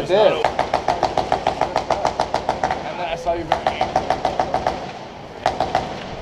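Airsoft electric rifle firing full-auto bursts, its gearbox cycling at about eight shots a second: one long burst of a couple of seconds, a shorter one shortly after, and a brief one near the end.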